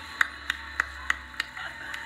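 Five sharp hand claps in an even rhythm, about three a second, over a faint steady low hum.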